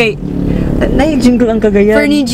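Voices vocalising inside a car's cabin over the steady low rumble of the car on the move.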